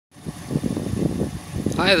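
Wind buffeting the microphone: an uneven low rumble, with a man's voice starting near the end.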